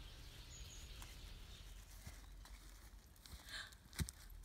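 Near silence: faint outdoor background hiss, with a brief faint sound about three and a half seconds in.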